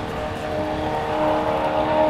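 A race car's engine at high revs during a standing-mile run, a steady-pitched drone that grows louder over the two seconds.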